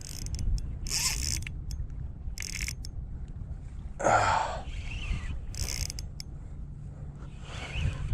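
Spinning reel being worked against a strong hooked fish: short bursts of reel gear and drag noise with scattered clicks, over a steady rumble of wind on the microphone. A louder rush of noise comes about four seconds in.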